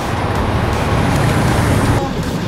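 Street traffic at close range: heavy vehicle engines, a bus and trucks among them, running as a steady low engine noise.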